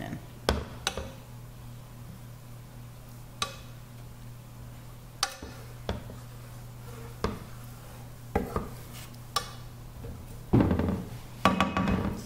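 Wooden spatula stirring raisins in pineapple juice in a nonstick skillet, knocking and scraping against the pan now and then, with a louder run of knocks near the end. A steady low hum runs underneath.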